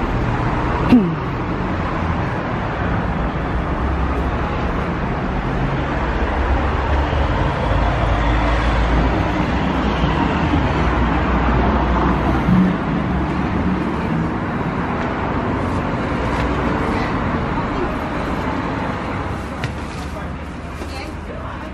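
Street traffic noise: a steady rumble of road vehicles, swelling through the middle as one passes close. A sharp click about a second in.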